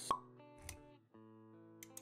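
Intro jingle: light background music of steady notes with a short, sharp pop sound effect just after the start and a low thud about halfway through; the pop is the loudest thing.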